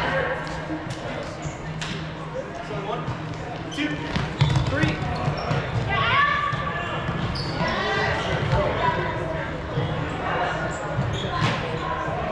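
Players calling out to each other in a large, echoing gym, over running footsteps and shoe squeaks on the hardwood court.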